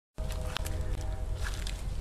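A burning CRT television set giving a few faint crackles and pops over a steady low rumble. The sound cuts out for a moment at the very start.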